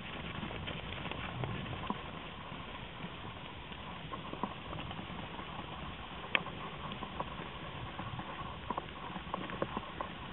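A herd of young black-and-white cattle running, their hooves giving irregular scattered thuds and clicks over a steady background hiss.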